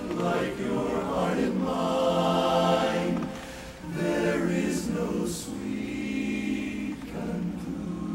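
Men's barbershop chorus singing a cappella in close four-part harmony, holding full sustained chords, with a brief break for breath a little before halfway through.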